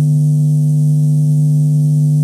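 A loud, steady, low electronic hum with a buzzy edge, one unchanging pitch with its overtones.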